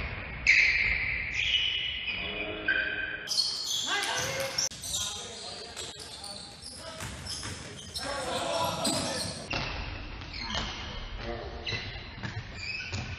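Basketball bouncing on a hardwood gym floor during play, with players' voices and shoe sounds echoing in a large indoor hall.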